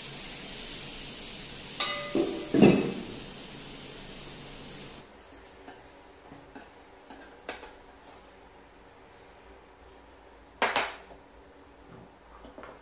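Household knocks and clatters: a quick cluster of sharp knocks about two seconds in and another loud one near the end, with a few small clicks between, over a steady hiss that cuts off about five seconds in.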